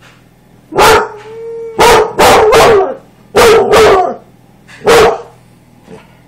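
Dog barking loudly, about six barks over four seconds, with a short steady held note just after the first bark.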